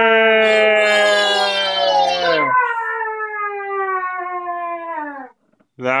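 A long, drawn-out vocal call from a person: one steady held note for about two and a half seconds, then a lower note that slowly sinks in pitch and stops about five seconds in.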